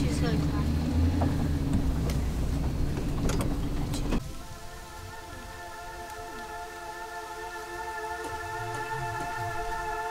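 A vehicle engine running steadily, heard from inside the cab, for about four seconds. It then cuts off abruptly and gives way to quiet background music of long held tones.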